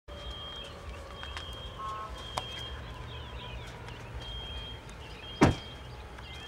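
Outdoor background of a steady low rumble with faint high chirps, broken by a sharp click about two and a half seconds in and one loud thump near the end.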